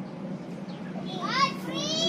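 Children's voices shouting while they play, rising to a high-pitched shout about a second in, over a steady low hum.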